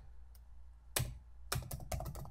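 Computer keyboard keystrokes typing a font name: a single key click about a second in, then a quick run of several key clicks near the end.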